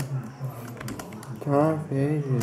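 Typing on a computer keyboard: a run of irregular key clicks, with a voice talking over it in the second half.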